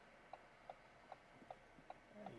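Car's turn-signal indicator ticking faintly and evenly, about two and a half ticks a second.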